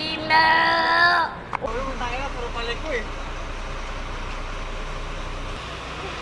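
A child's voice holding one loud drawn-out note for about a second. Then, after a cut, a truck engine running steadily as a low rumble outdoors, with faint voices.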